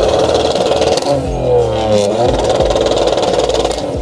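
BMW M3's V8 being revved hard through its quad exhaust, the pitch repeatedly dropping and climbing again.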